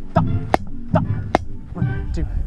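Two sharp drumstick strikes on a drum, about a second apart, with scattered voices in the background.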